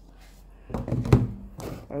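Handling noise from a small plastic toy worked by hand close to the microphone: a short clatter with one sharp knock about a second in, then a brief rustle.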